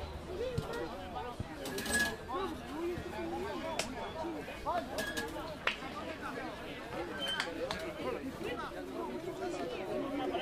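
Several people talking at once, indistinct overlapping chatter with no words standing out, with a few short sharp knocks or claps, the loudest about two seconds in.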